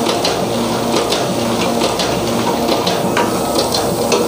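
Two-colour offset printing machine for non-woven bags running, its inked rollers turning with a steady hiss and frequent sharp clicks, about two or three a second.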